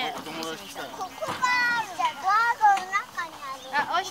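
Young children's high-pitched voices chattering and calling out over one another, with one long high call about a second and a half in.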